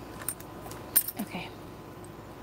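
A few light metallic clicks and taps, the sharpest about a second in, from a hand wearing several metal rings moving paper die-cut pieces across a tabletop.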